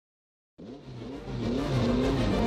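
Formula One car engine revving, its pitch repeatedly rising and falling. It cuts in about half a second in and grows louder.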